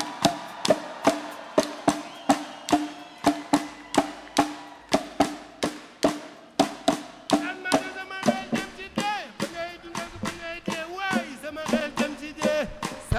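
Live band music: a steady percussive beat of about two to three sharp strikes a second over a held chord, with a singer's voice joining in over it in the second half.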